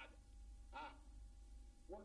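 Near silence: a low steady hum of room tone, with one faint, brief voice sound a little under a second in.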